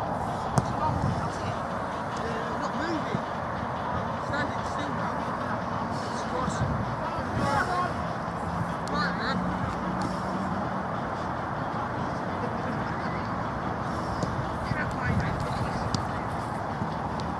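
Distant shouts and calls of players during an outdoor football match, over a steady rushing background noise.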